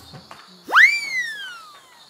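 A single whistle that sweeps sharply up in pitch and then glides slowly down over about a second, starting just before the middle.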